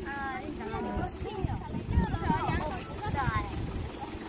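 People talking, the voices fairly quiet, over low irregular knocks and rumble.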